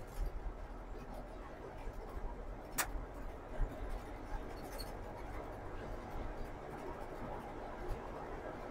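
Truck cab interior noise while driving: the engine and tyres make a steady low rumble, with one sharp click a little under three seconds in.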